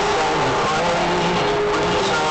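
Loud live concert music played over a venue PA, heavily overdriven on a phone microphone, with steady held notes over a dense wash of noise.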